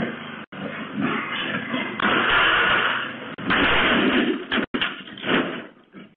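A riding lawn mower coming down metal loading ramps off a pickup truck, with a loud rough clatter and rumble, heard through a doorbell camera's narrow, tinny microphone. The sound cuts out briefly twice.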